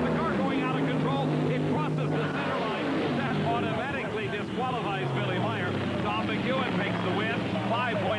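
Nitromethane-burning funny car engines running hard down a drag strip, their pitch falling about halfway through as the cars come off the throttle at the end of the run.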